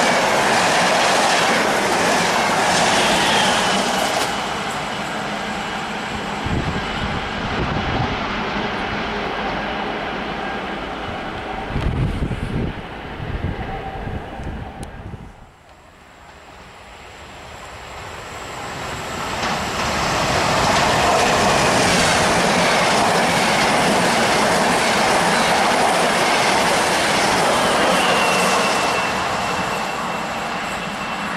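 Intercity Notte passenger carriages rolling past on the track, their wheels clacking over rail joints as the train draws away. After a sudden drop, the rolling roar of another electric train builds as it approaches, then holds steady and loud.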